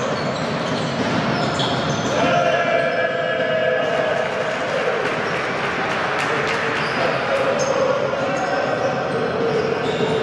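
Basketball game in play: a ball bouncing on a hardwood court, with players' and spectators' voices mixed in.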